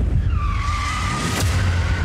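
Car tyres screeching in a skid, a film sound effect: one long screech that swells to its loudest about one and a half seconds in, over a steady low rumble.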